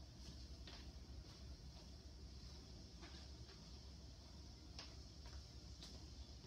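Near silence: room tone with a low hum and a few faint, scattered taps, like footsteps on the floor.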